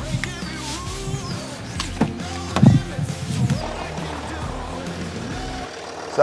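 Background music, with a Land Rover engine starting up partway through, loudest at about two and a half seconds in, then running at idle.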